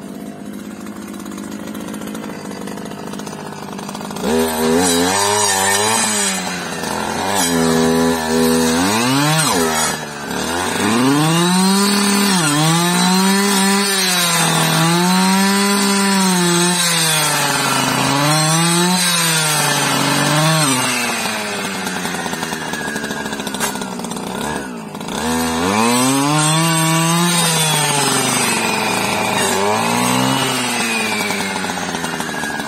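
Husqvarna 555 FX clearing saw's two-stroke engine running low at first, then revving up and down over and over as the blade cuts into brush, each rev rising and then sagging under load. It drops back briefly twice before picking up again.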